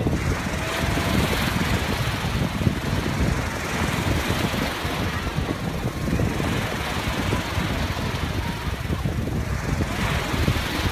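Sea surf washing steadily around people standing in shallow water, with wind buffeting the microphone in an uneven low rumble.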